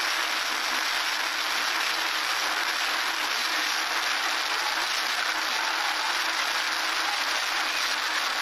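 Steady, even static hiss with nothing distinct standing out of it: the amplified noise floor of a phone recording taken in silence to catch a ghost's voice.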